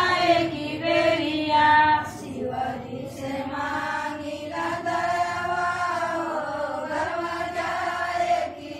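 A group of women singing a Shiva bhajan together in chorus, in long, drawn-out sung lines.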